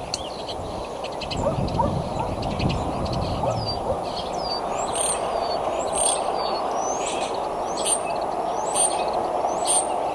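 Small birds calling over steady outdoor background noise, with a sharp, high, downward-sweeping note repeated about once a second through the second half. A low rumble runs from about one to four seconds in.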